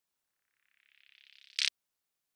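A short produced intro effect: a faint, rapidly fluttering hiss swells for about half a second and ends in a sharp, bright burst that cuts off suddenly.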